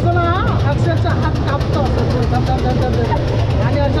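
Several voices talking over a steady, loud low mechanical drone.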